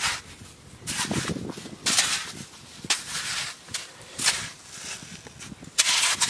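A hoe chopping into wet sandy mud and turning it over, with about five thudding, scraping strokes roughly a second apart.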